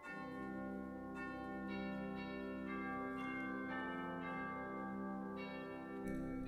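Church organ playing the service prelude: a held low chord under a slow line of bell-like notes, a new note entering about every half second and sustaining.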